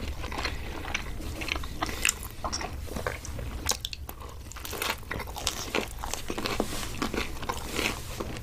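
Close-up eating sounds of two people biting and chewing pizza: frequent sharp, wet mouth smacks and crunches in an irregular run, easing briefly about halfway through.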